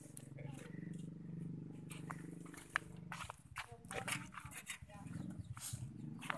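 Small motorbike-type engine of a homemade four-wheel buggy idling steadily, then running less evenly after a sharp click about halfway through, as the driver works the gear lever.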